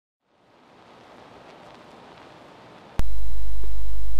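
A faint hiss fades in, then about three seconds in a click is followed by a loud, steady low electrical hum, mains hum in the recording.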